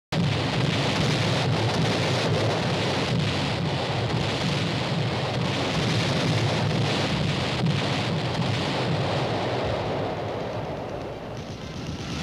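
Continuous dense rumble with a crackling edge, the film's sound of a naval bombardment and battle. It eases slightly near the end.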